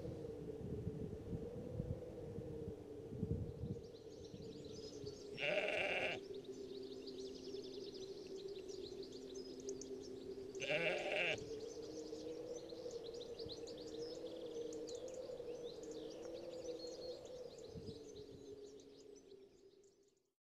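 A sheep bleating twice, about five and a half seconds in and again about eleven seconds in. Underneath are a steady low hum and faint high chirping, and everything fades out near the end.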